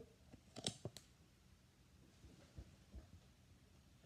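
Near silence during a negative-pressure fit test of a full-face snorkel mask, its N99 filter inlet blocked by hand while the wearer breathes in: no hiss of leaking air, which shows a good seal. Two faint clicks within the first second.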